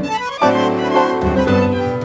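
Instrumental tango milonga played by a small tango ensemble, violins to the fore over piano and bass notes, with the full group striking in on a chord about half a second in.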